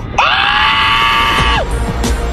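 A high-pitched scream that rises at first, holds level for about a second and a half, then drops off, over loud trailer music.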